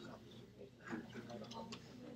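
Faint, indistinct chatter of students talking among themselves in a lecture hall, with a few soft clicks.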